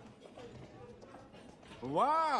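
Faint background voices murmuring. Near the end, a loud voice begins a long call that slides up in pitch.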